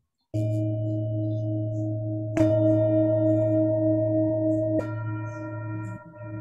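Tibetan singing bowl struck with a mallet three times, about two and a half seconds apart. Each strike sets off a sustained ringing tone with a slow wavering in it that carries over into the next strike, heard over a video-call connection.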